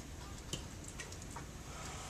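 A few faint, irregular taps of a pen on an interactive whiteboard over a steady low room hum.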